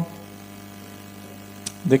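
Steady low electrical hum, of the mains-hum kind, heard during a pause in speech. A man's voice starts again just before the end.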